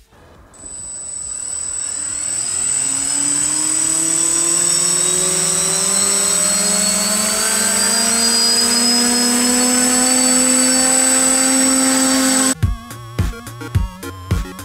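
Brushless quadcopter motors (Multistar 2209 1200 kV) spinning up, the whirring rising slowly and steadily in pitch and level with a thin high whine above it. It cuts off suddenly near the end, and electronic music follows.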